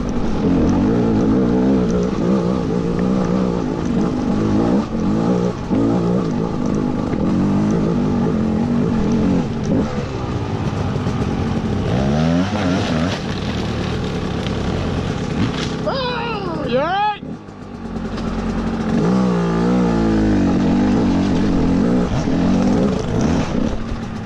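Gas Gas EC200 two-stroke dirt bike engine running and revving up and down. About 16 seconds in the revs rise sharply and fall away, the engine goes quiet for a moment, then picks up again about two seconds later.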